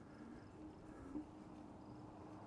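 Faint, wavering hum of the Hovsco Porto Max electric scooter's hub motor as it pulls away under power, with one small click a little over a second in.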